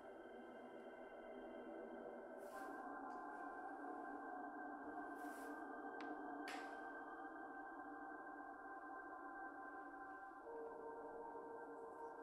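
Electroacoustic music over loudspeakers: a faint, steady drone of many held tones, thickening about two and a half seconds in and settling onto a lower tone near the end. A few short hissing swells and a click pass over it in the middle.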